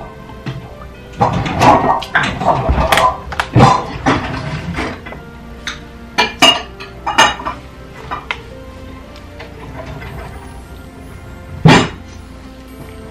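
Background music, with a glass and kitchen things clinking and knocking as they are handled: a dense run of clicks in the first few seconds, scattered clicks after, and one loud knock just before the end.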